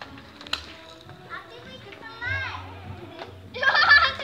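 Children's voices calling out in high, sliding tones, with a loud burst of shouting near the end. A sharp click sounds about half a second in.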